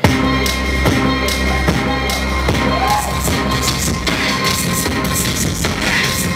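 Live electronic music played on samplers, including a Roland SP-404, kicks in suddenly with deep sustained bass and a steady beat.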